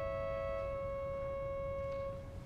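Pipe organ holding a sustained chord of steady, unwavering pipe tones; one upper note is released under a second in while the lower notes sound on.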